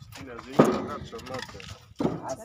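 Men's voices talking, with a single sharp knock about half a second in.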